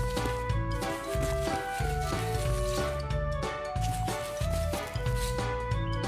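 Background music: a lively melody of short held notes over a steady bass line and beat.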